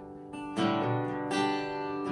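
Acoustic guitar being strummed with no singing: a soft first half-second, then two chords struck about a second apart and left ringing.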